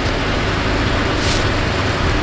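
Truck engine running: a steady, loud rumble, with a brief hiss a little over a second in.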